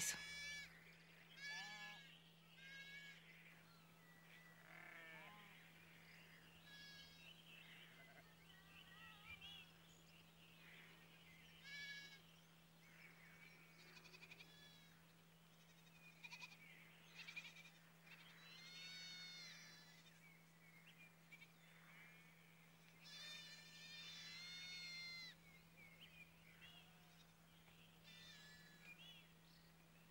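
Faint bleating of a flock of small livestock: many separate quavering calls, repeated every second or two and sometimes overlapping.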